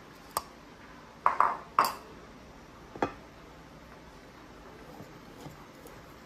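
Sharp metallic clinks of a stainless-steel mesh sieve and wire whisk knocking against each other and the rim of a ceramic bowl while flour is sifted. There is one clink just under half a second in, then a quick run of three louder ones over about half a second, and one more about three seconds in.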